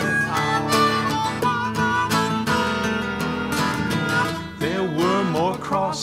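Instrumental break in an up-tempo folk-country song: a flat-picked Gibson J-50 acoustic guitar strumming steadily while an A harmonica plays the melody, its notes bending up and down a little past the middle.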